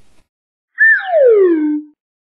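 A synthesized cartoon sound effect: a short chirp, then one long glide falling steadily in pitch for about a second.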